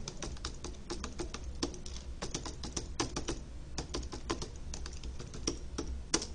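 Typing on a computer keyboard: quick, irregular keystrokes, several a second, with a short pause a little after halfway.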